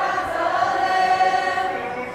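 A group of protesters singing a protest chant together in long, held notes.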